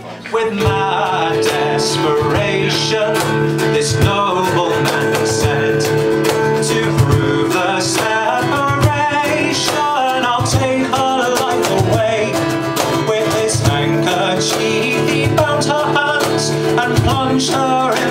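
Instrumental break of a folk ballad played live by a trio: acoustic guitar picking a quick melody over long held cello notes, with a cajon keeping a steady beat.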